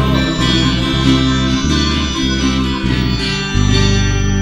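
Acoustic guitar band playing an instrumental passage with no singing: strummed chords that change about every half second, then a chord held and left ringing from about three and a half seconds in.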